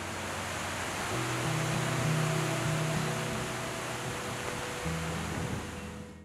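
Steady rain, an even hiss, over soft background music; the rain cuts off suddenly at the very end.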